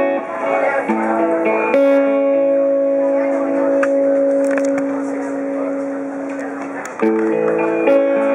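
Acoustic guitar being played: a few plucked notes about a second in, then a chord that rings out for about five seconds, and a new chord near the end.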